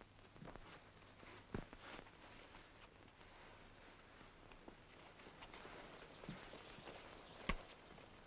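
Faint footsteps and scuffling on a dirt road as men lift and drag a body, with two sharper knocks, one about a second and a half in and one near the end.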